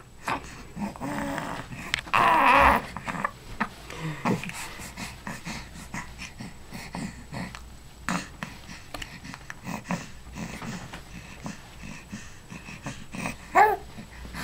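A baby making soft grunts and breathy vocal sounds, with a louder strained, breathy one about two seconds in.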